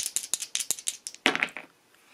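Two dice rattled together in a cupped hand, a quick run of small clicks, then thrown into a fabric-lined dice tray with a brief louder clatter a little over a second in.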